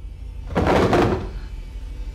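A loud, heavy crash about half a second in, lasting under a second.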